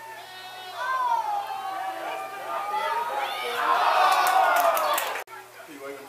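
Spectators shouting and cheering during a football play. One voice holds a long, drawn-out yell, then many voices cheer together and cut off abruptly a little past five seconds.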